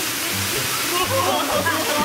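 Steady rush of water pouring down a pool's artificial rock waterfall and water slide, with people's voices calling out over it.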